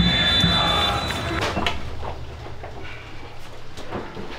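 Referee's whistle: one long blast lasting nearly two seconds, over open-air pitch noise that slowly fades.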